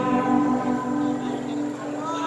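The last held chord of a song played over a loudspeaker, fading out.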